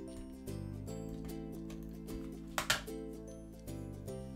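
Soft background music with sustained chords that change about half a second in and again near the end. A single short click about two-thirds of the way through.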